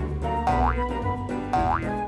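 Light background music with two short rising comic glides, cartoon-style sound effects, about a second apart.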